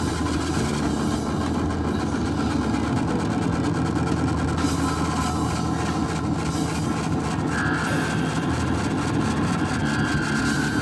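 A live rock band's amplified drone: a dense, steady wash of electric guitar and bass noise through the amps, with held low tones and no clear beat. A higher held tone comes in about three quarters of the way through.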